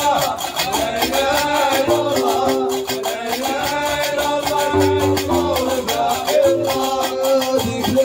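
Gnawa music played live: metal qraqeb castanets clacking a steady rhythm over the guembri's bass notes, with chanted singing.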